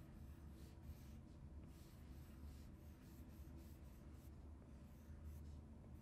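Faint, irregular scratches and taps of an Apple Pencil's tip on an iPad Pro's glass screen as a word is hand-lettered stroke by stroke, over a low steady hum.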